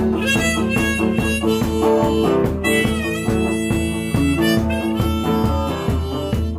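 Harmonica played from a neck rack, with a held melody over a rhythmically strummed guitar.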